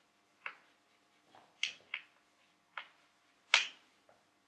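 Chalk tapping and scraping on a blackboard as a word is written: a run of about six short, sharp clicks, the loudest near the end.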